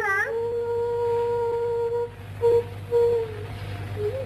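A high voice, most likely a woman's, glides into one long held note lasting about two seconds, then gives two brief shorter notes. A steady low hum from the old film soundtrack runs underneath.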